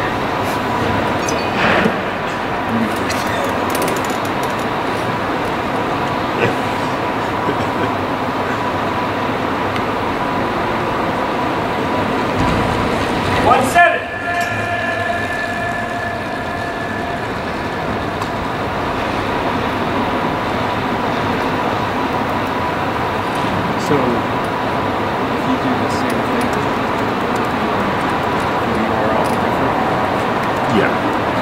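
Steady background noise of a large indoor velodrome, with indistinct voices and a constant high hum. About fourteen seconds in there is a brief louder burst, followed by a few seconds of a steady pitched tone.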